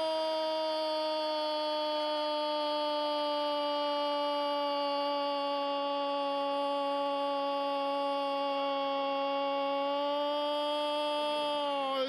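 A football commentator's drawn-out goal cry, one long "gooool" held on a single steady pitch, announcing a goal. It sags slightly in pitch near the end before breaking off into speech.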